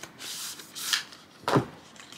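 Cardboard watch-band box being worked open: paper rubbing and sliding as the inner tray slides out of its sleeve, then a single sharper knock of the box about one and a half seconds in.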